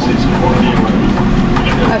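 A steady low mechanical hum under faint background voices.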